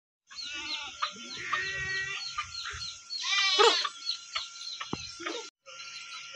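A goat bleats once, about three and a half seconds in, over the constant chirping of small birds. The sound drops out for a moment near the end.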